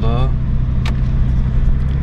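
Steady low drone of a 2001 Mercedes-Benz S320 CDI's 3.2-litre straight-six diesel at low revs, with road noise, heard inside the cabin while driving slowly. There is one sharp click about a second in.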